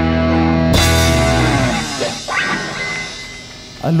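Live rock band (electric guitars, bass, drums, keyboard) holding a loud chord, then striking a final hit with cymbal crash about a second in that rings out and fades away. A brief rising guitar note sounds as it dies down.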